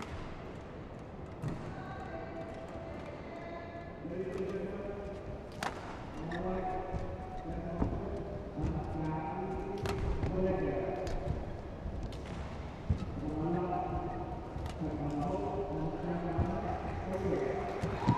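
Badminton rally: sharp racket strikes on the shuttlecock and thuds of players' footwork at irregular spacing, with spectators' voices calling out over the play from about four seconds in.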